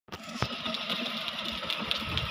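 Small electric motors of a children's battery-powered ride-on toy car whirring steadily as it drives, with one sharp click about half a second in.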